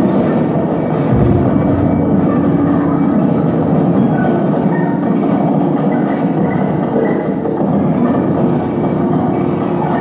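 Live industrial noise music from electronics: a dense, steady wall of rumbling noise, heaviest in the low end, with faint held tones above it. A short low boom comes about a second in.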